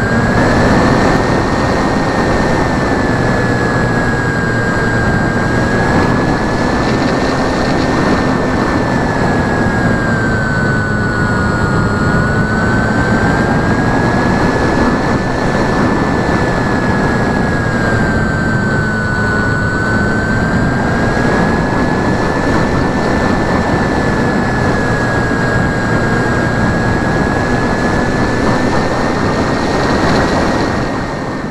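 Model airplane's motor and propeller running steadily in flight, heard from on board: a whine that drifts slowly up and down in pitch as the autopilot works the throttle, over heavy wind rush across the microphone.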